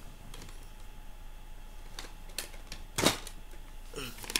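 Plastic cassette tape cases being handled and set down: a few separate light clicks and clacks, the loudest about three seconds in.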